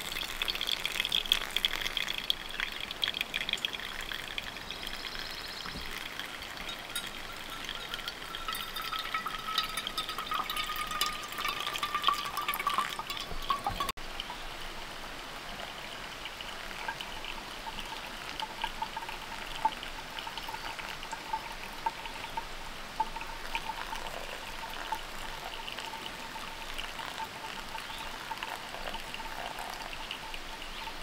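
A thin stream of hot water pouring steadily from a gooseneck kettle onto coffee grounds in a paper filter cone, a slow pour-over brew.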